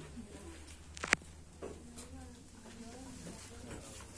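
Low, indistinct murmur of voices, with one sharp click about a second in.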